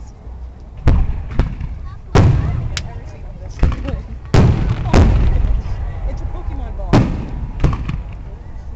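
Aerial fireworks shells bursting overhead: about nine sharp booms over eight seconds, some in quick pairs, each followed by a rolling echo that fills the gaps between them.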